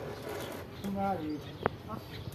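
People talking, with one short sharp click about three-quarters of the way through.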